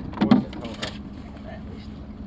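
A few short knocks and a dull thump in the first second, from a jacket being pulled out of a small fibreglass boat's storage hatch, then only faint steady background noise.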